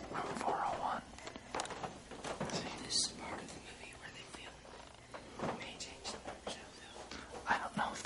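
Hushed voices whispering, with hissy breaths and soft words coming in short bursts.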